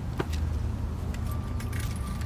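Wind rumbling on a handheld phone's microphone, with a few sharp clicks and a thin steady high tone coming in about a second in.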